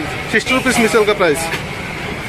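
A man speaking briefly over steady background noise.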